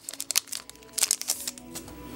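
Foil booster-pack wrapper crinkling in bursts as it is handled and opened, with music playing faintly underneath.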